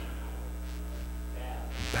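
Steady low electrical mains hum, from the sound or recording system, in a pause between spoken words.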